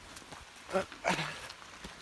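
Footsteps of a runner pushing through forest undergrowth, with leaves brushing, and a short throaty vocal noise from the runner about a second in.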